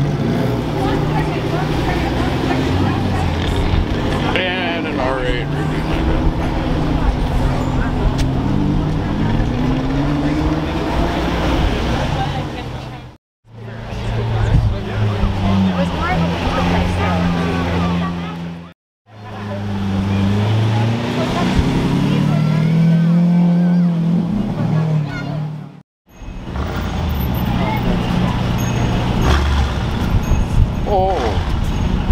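Lamborghini supercar engines running at low speed as the cars creep along a street, with a rising rev about nine seconds in. The sound cuts off suddenly three times, at about 13, 19 and 26 seconds, and picks up again each time.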